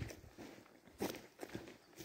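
Faint footsteps of a person walking on a forest floor: a few soft steps, the clearest about a second in.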